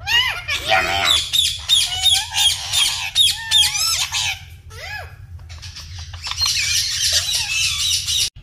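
Indian ringneck parakeets chattering in quick, high-pitched, talk-like calls that rise and fall. In the last couple of seconds the sound turns into harsher, denser squawking.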